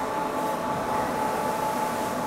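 Factory machinery running with a steady drone and a thin steady whine through it.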